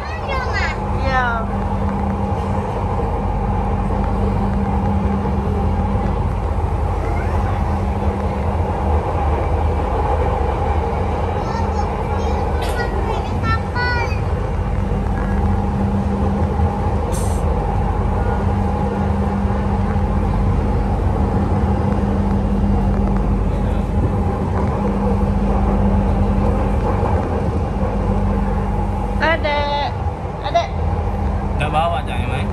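Inside a Palembang LRT electric train under way: steady running noise of wheels on rail with a constant low hum.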